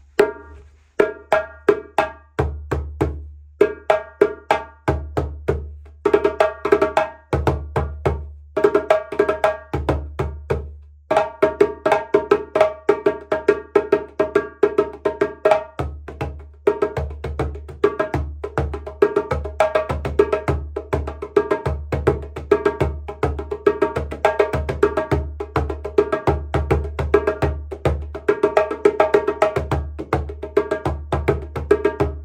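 A 13-inch Guinea djembe with a golden Melina hardwood shell, played by hand in a fast rhythmic pattern that mixes deep bass strokes with sharper ringing tone and slap strokes. The playing breaks off briefly about six and ten seconds in.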